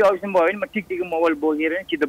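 Speech only: a caller talking over a telephone line, the voice thin and cut off in the highs.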